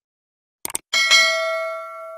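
Subscribe-button sound effect: two quick clicks, then a bright bell ding that rings on and slowly fades.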